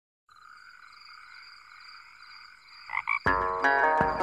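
Opening of a country song soundtrack: a steady, high-pitched chirring ambience for about two and a half seconds, then guitar and band music coming in loudly near the end.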